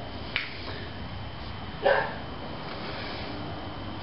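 Faint handling sounds from fingers working a sticky lump of hop hash: a small click about a third of a second in and a short rustle just before halfway, over a steady room hum.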